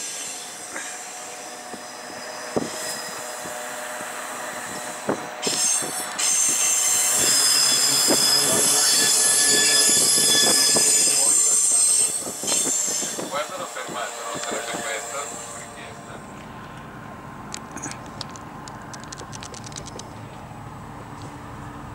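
Bernina Express train's steel wheels squealing on the rails as it slows, a loud high-pitched squeal strongest from about six to twelve seconds in, then fading to a quieter rumble with scattered clicks near the end as the train comes into a station.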